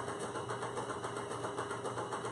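Stand mixer running steadily, whipping a batch of marshmallow, with a fast, even whirr.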